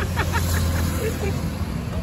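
Steady low rumble of road traffic, with faint voices at the start.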